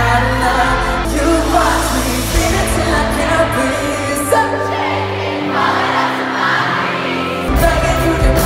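Live pop music heard from the audience in an arena: a male singer singing over the band, with the crowd audible. The heavy bass drops out a couple of seconds in and comes back near the end.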